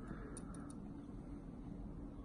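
Quiet room tone: a faint steady low hum with a few soft, brief ticks in the first second.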